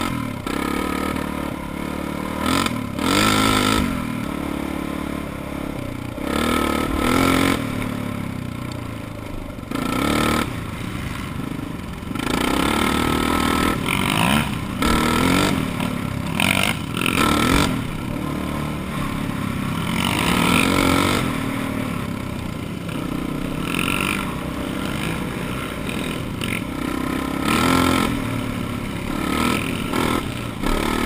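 Single-cylinder dirt bike engine heard from the rider's helmet, revving up and dropping back again and again as the throttle is worked along a rough trail, with rattling from the bike over the bumps.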